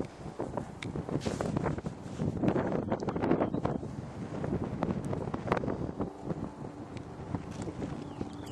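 Wind buffeting the camera microphone: an uneven low rush with many short crackles as the gusts hit.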